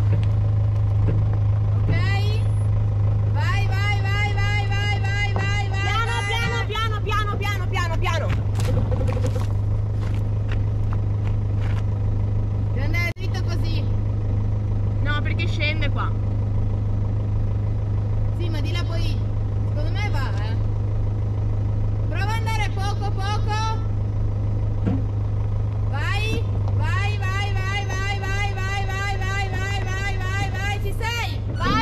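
An Iveco-based motorhome's engine running with a steady low drone as the vehicle crawls down a rough gravel track. Repeated high, wavering sounds come and go over it in short clusters.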